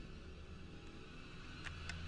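Amplified recorder audio: a steady low hum and hiss, with two faint taps near the end.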